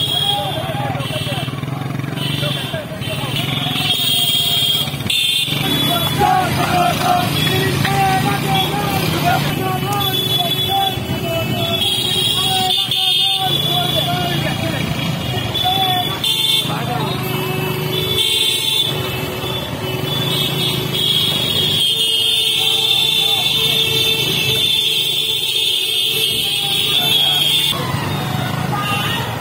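A procession of motorcycles running together, with horns tooting and a crowd of men shouting over the engines.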